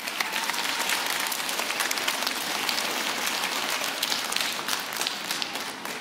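Audience applauding, a dense patter of many hands clapping that tapers off near the end.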